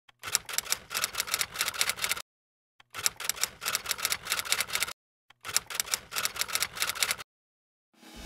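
Typewriter keystroke sound effect: three runs of rapid key clicks, each about two seconds long, separated by short silences.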